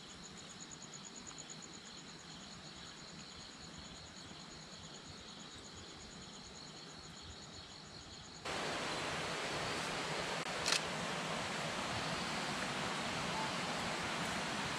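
Night insects calling in a rapid, regular high-pitched pulsing over faint hiss. About eight and a half seconds in, the sound cuts abruptly to a louder, steady rush of running creek water, with one sharp click a couple of seconds later.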